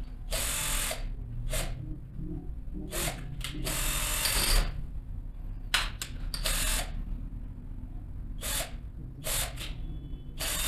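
Cordless drill-driver running in a series of short bursts, each under a second, as it drives the terminal screws on a motor contactor to clamp the wires.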